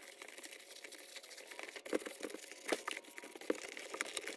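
A cleaning cloth rubbing and scrubbing over the vinyl panels of a 1970s toy play set, heard as a run of irregular soft scuffs with a few sharper knocks.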